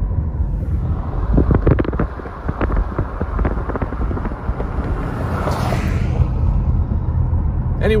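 Car cabin road noise as the car drives slowly: a steady low rumble, with a cluster of light clicks and knocks about one to three seconds in and a brief hiss around five seconds in.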